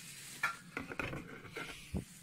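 Handling noise of a hand rummaging in a wooden telescope case: a few light clicks, knocks and rustles, spread through the two seconds.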